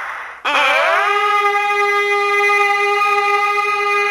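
Opening of a rock song: a brief breathy sound, then one long held note that slides up in pitch and settles into a steady tone.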